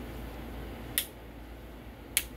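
A single sharp click about a second in from a rocker switch on a solid-state CB linear amplifier's front panel. It switches the one-transistor driver section out so that only the two-pill section runs. A low steady hum runs underneath.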